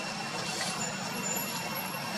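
Steady outdoor background noise: a low hum under an even hiss, with faint thin high tones held throughout.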